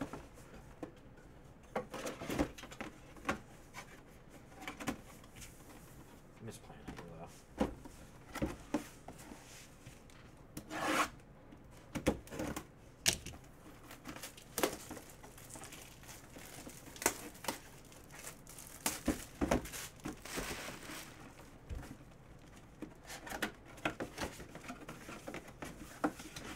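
Hands handling and opening a cardboard collectible mini-helmet box: irregular knocks and rubbing of cardboard and plastic, with a longer tearing sound about halfway through.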